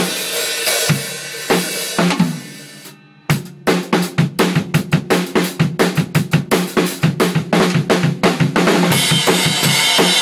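Acoustic drum kit being played. Cymbal crashes ring out and fade to a brief pause about three seconds in. Then comes a fast, steady beat of kick, snare and tom hits, with a cymbal wash filling in near the end.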